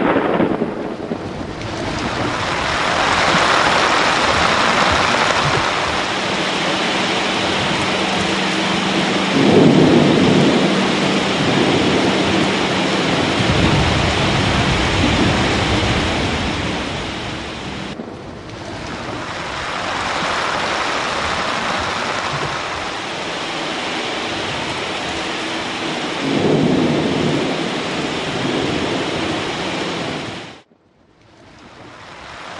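Steady heavy rain with rolling thunder, the loudest rumbles about ten seconds in and again near the end.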